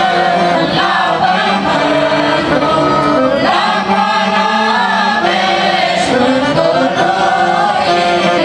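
Folk choir of women and men singing a Romanian colindă (Christmas carol), moving together in slow phrases of held notes.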